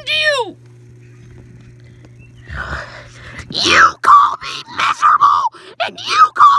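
A person's voice screaming and groaning, starting about two and a half seconds in with a falling scream followed by shorter cries, over a steady low hum.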